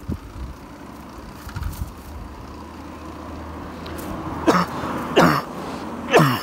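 Wind and rolling rumble of a bicycle being ridden along a road, with two loud coughs from the rider about four and a half and five seconds in.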